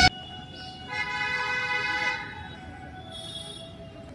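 A vehicle horn honking once, a steady tone about a second long that starts about a second in, over quiet outdoor background.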